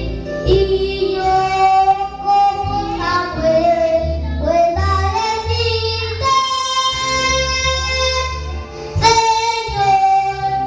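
A young boy singing a Spanish-language worship song into a microphone, holding long notes, over instrumental accompaniment with steady bass notes.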